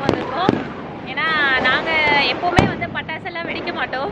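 Diwali firecrackers going off: sharp single bangs, two close together at the start and a louder one about two and a half seconds in.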